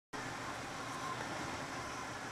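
Steady running noise of a moving passenger train, heard from the rear door of its last car: wheels rolling on the rails.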